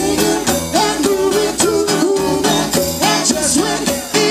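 Live rock band playing: strummed acoustic guitar, drums and congas keeping a steady beat, and a woman's lead vocal through a PA microphone.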